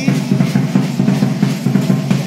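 Music with a steady drum beat, bass drum and snare prominent.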